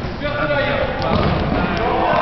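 Players' indistinct shouts echoing in a large sports hall, over thuds of a ball on the court floor and a few short sharp ticks.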